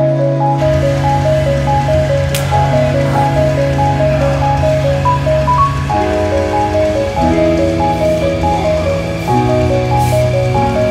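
Background music with no vocals: a repeating figure of short notes over held bass notes that change every few seconds.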